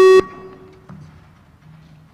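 Parliamentary electronic voting system sounding one short, loud beep of about a quarter second, with a brief ring after it. The beep signals the opening of a vote.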